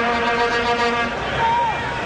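A vuvuzela blown in one steady note for about a second, over the noise of a stadium crowd.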